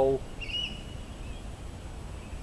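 A bird calls once, a short rising note that levels into a held whistle for about a second, over a low background rumble.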